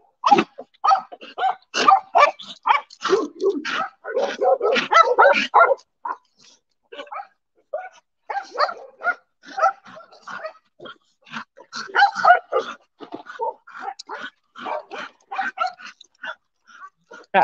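Dogs barking in short, irregular barks while crowding to be handed their preventative chews, with a sparser lull about six seconds in before the barking picks up again.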